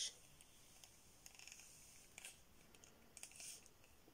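Faint rubbing and scraping of a ferro rod being pushed into a snug leather holder. There are three short scrapes, about a second in, two seconds in and near the end, over near silence.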